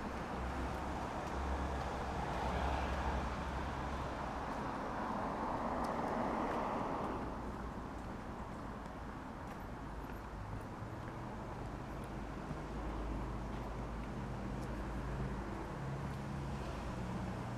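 A vehicle passing on the street: a rush of road noise that swells over the first few seconds and dies away by about eight seconds in, leaving a steadier low background hum.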